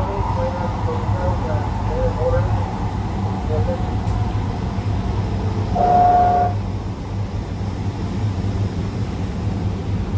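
An AnsaldoBreda P2550 light rail car running, heard from the cab as a steady low rumble. About six seconds in the train gives one short, steady horn toot.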